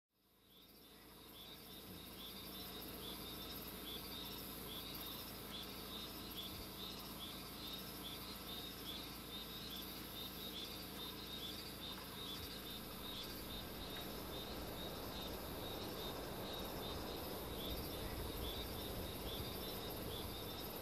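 Faint outdoor insect chorus: short chirps repeating about twice a second over a soft steady hiss, fading in over the first two seconds.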